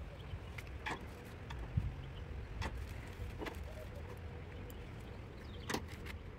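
A few light clicks and rustles from small wire connectors and a plastic parts bag being handled, scattered across a few seconds over a low, steady outdoor rumble.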